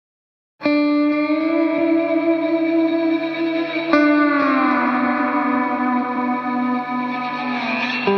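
Instrumental opening of a song: an electric guitar chord with effects and reverb rings out just under a second in, and a second chord is struck about four seconds in. Its held notes slide slowly down in pitch.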